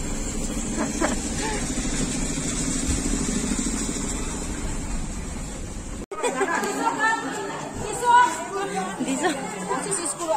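A steady low rumble inside a car that is stopped in traffic with its engine running and rain on the windscreen. About six seconds in the sound cuts off abruptly and indistinct chatter of several voices, children among them, takes over.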